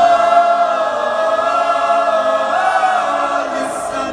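High school mixed choir singing a cappella: a loud, full chord enters suddenly and is held, shifting to a new chord about two and a half seconds in, then thins and softens near the end.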